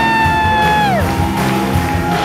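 Live acoustic folk music: strummed acoustic guitar under a long, high held whoop that slides down and breaks off about a second in. A fainter steady high note carries on over the guitar after it.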